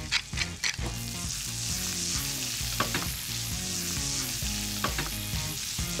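Sliced potatoes sizzling as they fry in hot oil in a nonstick frying pan, with a few short scrapes and knocks of a wooden spoon stirring them.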